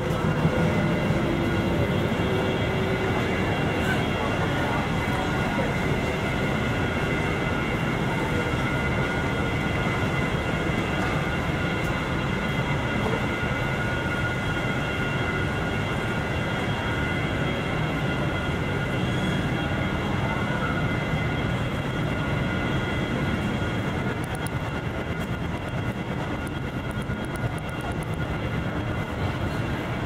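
Steady low city rumble with several steady high-pitched tones held throughout, of the kind PANN takes for trains.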